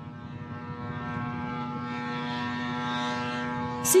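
Engine and propeller of a Seeker remotely piloted aircraft running at full power on its take-off run: a steady, even-pitched buzz that grows louder as the aircraft approaches.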